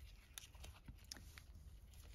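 Near silence, broken by faint scattered ticks of hemp cord and paper being handled as the cord is wound around a button-and-string envelope closure.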